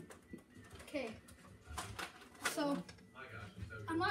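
A few short, indistinct vocal sounds over low room noise, with a small click at the very start.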